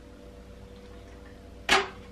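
Cork popping out of a bottle of sparkling wine: a single sharp pop with a brief hiss, near the end of an otherwise quiet stretch.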